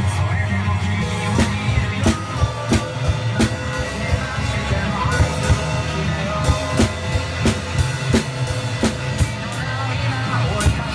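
Acoustic drum kit played along with a music backing track: bass drum and snare keep a steady beat, with sharp strikes landing about every two-thirds of a second over the sustained music.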